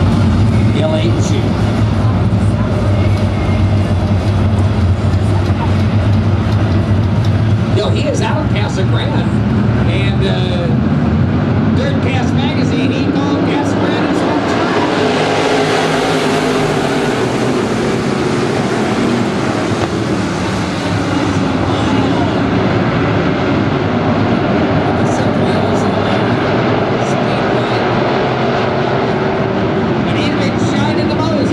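A field of IMCA dirt-track race cars running laps, a continuous engine drone whose pitch wavers as the cars throttle on and off. The sound grows fuller about halfway through as the pack sweeps past close by.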